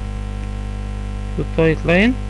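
Steady electrical mains hum on the recording, with a man's voice speaking briefly near the end.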